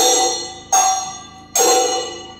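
Metal percussion of a Kathakali accompaniment, bell-metal struck in a slow steady beat: a little more than one stroke a second, each ringing with a bright metallic tone and fading before the next.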